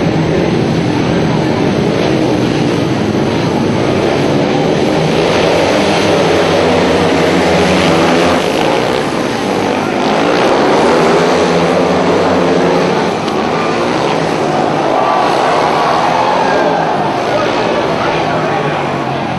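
Speedway motorcycles racing: several 500cc single-cylinder methanol engines run hard together, their pitch rising and falling as the bikes come round and pass.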